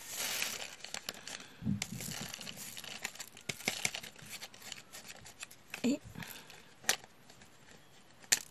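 Crinkling and rustling of small packaging handled at close range, with many light clicks, easing off near the end.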